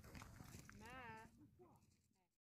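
A faint, high-pitched voice calls out once, briefly, about a second in. A couple of shorter, fainter calls follow, and then everything fades to near silence.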